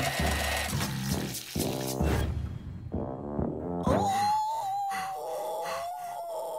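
Cartoon background music with comic sound effects; an electric hand mixer whirs under the music in the first two seconds. About four seconds in, a single tone slides up and holds, wavering.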